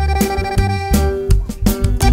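Recorded grupero band music playing an instrumental break without vocals: bass notes and a drum beat under a held melody line.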